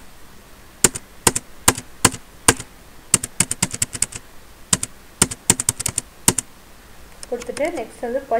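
Computer keyboard keys pressed in irregular single taps and quick runs, about twenty in all, as data is keyed into accounting software; a voice starts speaking near the end.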